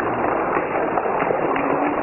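Studio audience applauding and cheering, a steady dense clatter of clapping with voices shouting in it.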